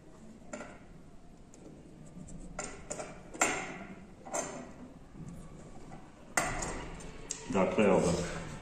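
Small metallic clicks and short scrapes as a fretsaw blade is fitted and clamped into the frame at the handle end, a few sharp clicks spread out, with a louder clatter of handling near the end.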